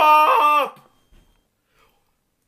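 A man's drawn-out wordless vocal cry, holding its pitch and dropping at the end, cutting off just under a second in; the rest is near silence.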